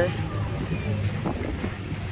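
Wind buffeting the microphone at the waterside, over a steady low hum.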